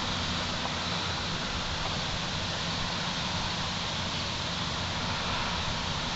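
Steady background hiss with a low, even hum and no distinct events: room tone.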